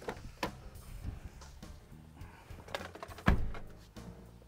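Infiniti QX50 driver's door being opened and someone climbing in: a few light clicks and handling noises, then the door thumping shut a little over three seconds in.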